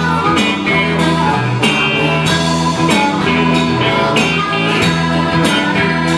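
Live electric blues band playing with a steady beat: a harmonica wailing over electric guitars, bass and a drum kit.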